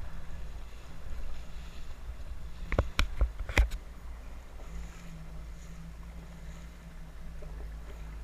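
Jet ski running on open sea: a steady low engine rumble with a faint hum, mixed with wind and water noise. About three seconds in, a quick cluster of four or five sharp knocks stands out as the loudest sound.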